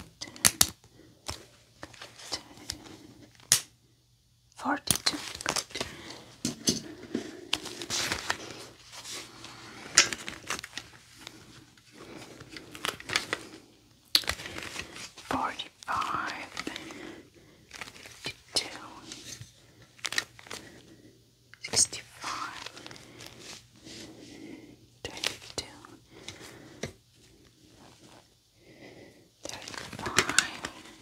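Gloved hands handling a plastic foot-measuring gauge against a bare foot: irregular plastic clicks and taps with scratchy rubbing and crinkling of the gloves.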